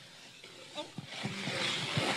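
A wooden planchette scraping across a wooden tabletop close to the microphone. After a quiet first second, a rough scraping noise builds up about a second in and grows louder as it moves fast enough to mark the table.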